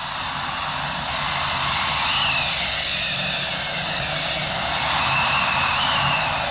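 A sound-effect intro of a steady mechanical rumble and rushing noise, like an engine, slowly growing louder, with faint wavering whistling tones above it.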